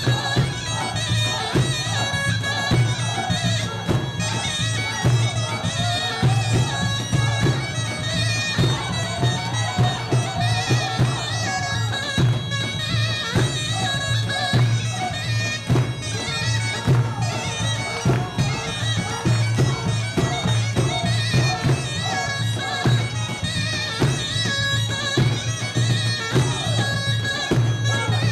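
Armenian folk dance music: a wind instrument plays a wavering melody over a steady low drone, with a drum beating throughout.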